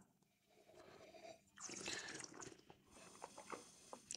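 Near silence with a faint sip of wine drawn through the lips about one and a half seconds in, followed by a few small mouth clicks.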